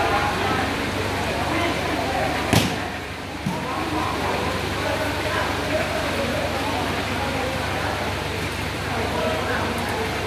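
Crowd of spectators talking continuously around a sand volleyball court, with one sharp smack of a volleyball being struck about two and a half seconds in.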